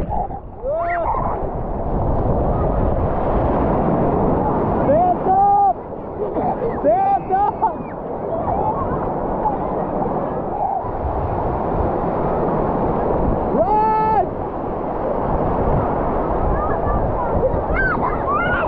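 Ocean surf breaking and washing around wading people, a steady rush of water close to the microphone. High voices call out and squeal over it a few times, one call held longer about three-quarters of the way through.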